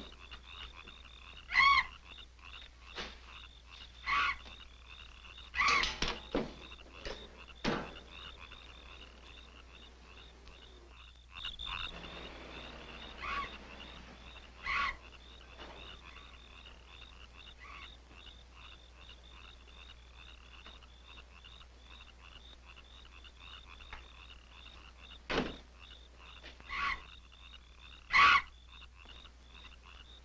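Night ambience of frogs croaking: a steady high trill runs under louder single calls that come every few seconds. A sharper knock sounds about 25 seconds in.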